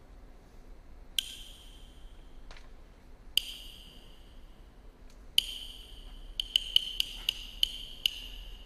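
Chinese opera percussion: a small ringing metal instrument struck singly three times, a couple of seconds apart, then in a quickening run of strikes near the end, each note ringing briefly.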